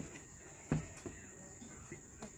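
Stingless bee hive box being handled: one sharp knock about three-quarters of a second in and a lighter click just after, as a hive half is positioned over its box. A steady high-pitched tone runs underneath.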